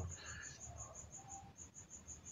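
A faint, high-pitched pulsing chirp, about six or seven pulses a second, heard while the voice pauses.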